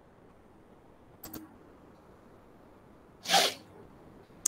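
Two quick mouse clicks about a second in, then near the end one short, loud burst of breath noise from a person, like a sneeze.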